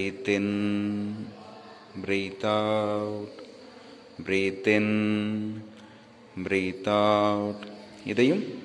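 A man's voice chanting four long, drawn-out syllables at a steady low pitch, each about a second long and about two seconds apart. It has the pace of a leader counting out the breaths of a yoga breathing exercise.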